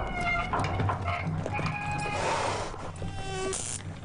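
Commercial soundtrack of music with sound effects: a creaking, squealing metal windmill wheel near the start, then an insect-like buzz ending in a short, sharp electric crackle from a bug zapper near the end.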